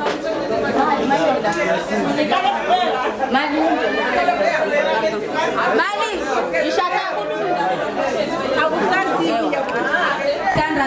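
Speech only: several people talking over one another, with a woman's voice amplified through a microphone among them.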